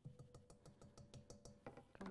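A spatula scraping and tapping foaming bath whip into a metal stand-mixer bowl: a faint, quick series of light clicks and taps.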